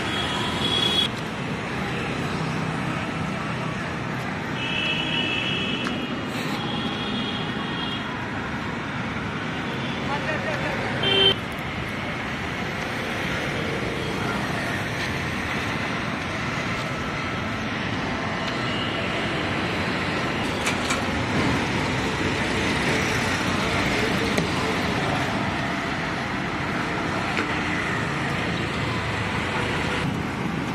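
Steady road traffic noise on a busy city street, with several short vehicle horn toots in the first dozen seconds; the loudest comes about eleven seconds in.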